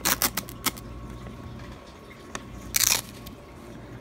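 Paper wrapper of a bank-sealed nickel roll being peeled and unrolled by hand: a few short clicks and crinkles at the start, then a louder brief rustle of paper about three seconds in.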